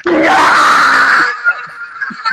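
A man's loud, harsh scream of laughter lasting about a second, cutting off sharply, then quieter laughing.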